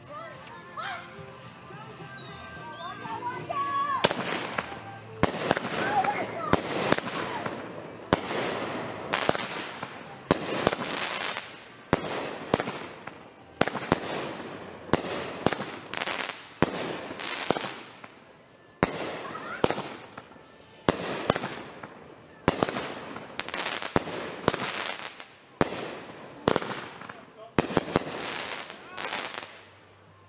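Consumer aerial fireworks going off. A few seconds after lighting, a long rapid series of sharp bangs begins, about one to two a second with crackle between them, and keeps going for over twenty seconds.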